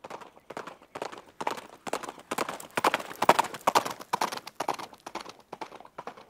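A steady rhythm of sharp, clip-clopping footfalls on hard ground, about three a second, swelling to a peak in the middle and fading again.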